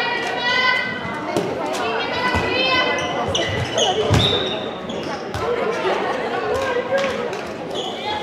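A handball bouncing and striking the hard court floor in a series of sharp knocks, amid voices calling out, all echoing in a large sports hall.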